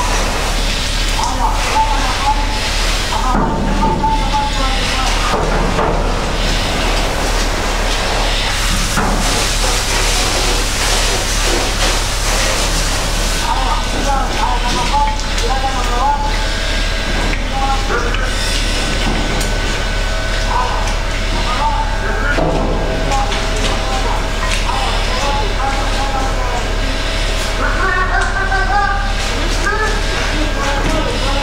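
Indistinct, muffled voices come and go over a steady loud noise with a low hum running under it.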